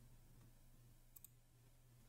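Near silence with a faint steady low hum, broken a little past one second in by a quick, faint double click of a computer mouse.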